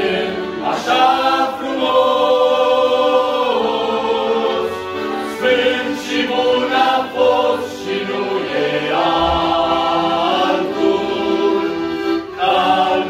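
Male vocal group singing a Christian hymn in harmony, in phrases of held notes, with an accordion accompanying.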